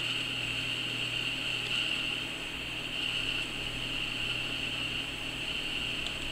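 Steady background hiss with a low hum underneath, unchanging throughout, with no distinct events.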